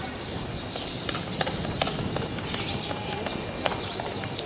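Outdoor athletics stadium ambience: a steady background hiss with a few scattered, irregular sharp clicks and taps.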